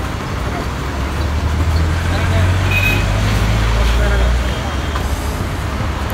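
Busy street traffic noise with a vehicle engine's low rumble, heaviest in the middle and easing off about four and a half seconds in, and faint voices in the background.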